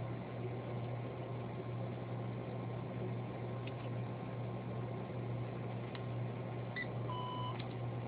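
One short electronic beep from a checkout register's barcode scanner about seven seconds in. It sounds over a steady low hum and a few light clicks.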